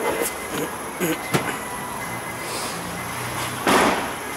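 Boot floor cover being handled by its strap: a few sharp clicks and knocks in the first second and a half, then a short, loud rush of noise near the end.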